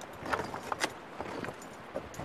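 Boots scuffing and stepping on loose rock, mixed with the clink of carabiners and metal climbing gear on a harness: a handful of short, irregular clicks and scrapes, most of them in the first second and a half.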